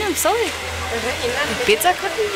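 A woman says a few words at the start and near the end, over the steady rush of a hair dryer running.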